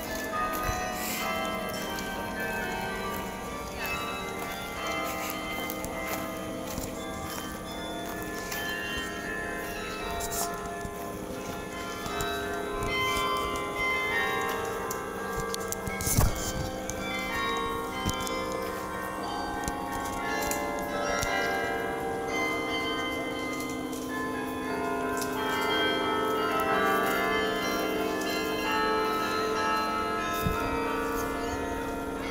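Carillon bells of Bok Tower playing a melody, many bell notes ringing and overlapping. A single sharp knock about sixteen seconds in.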